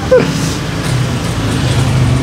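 A road vehicle's engine running close by: a steady low hum over street noise that rises slightly in pitch about a second in and grows gradually louder.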